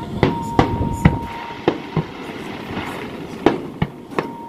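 Fireworks going off: a run of sharp bangs, about seven in four seconds, over a steady background rumble. A thin steady high tone sounds for about a second near the start.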